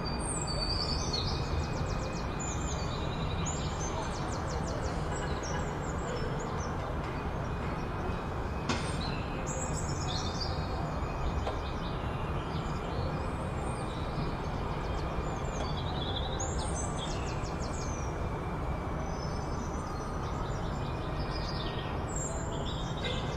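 Birds chirping and trilling in repeated short phrases over a steady rumbling background noise.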